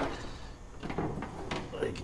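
A few light knocks and clicks as the sheet-metal hood of a 1929 Ford Model A pickup is unlatched and handled.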